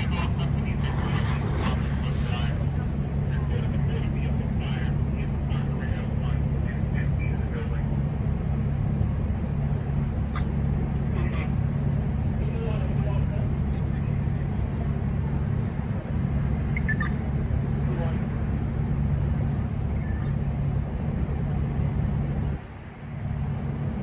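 Steady low mechanical hum with faint, indistinct voices over it; it dips briefly near the end.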